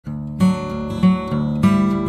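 Acoustic guitar music, chords strummed with a new strum about every half-second.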